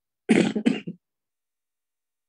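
A man clearing his throat: two short rasps in quick succession, close to the microphone.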